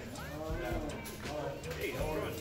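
Indistinct voices of people nearby, one drawn out in a long vowel that rises and falls in pitch during the first second, followed by shorter snatches of talk.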